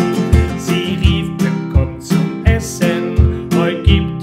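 Acoustic guitar with a capo, strummed in a steady, bouncing rhythm: a low bass note on each beat followed by lighter chord strums.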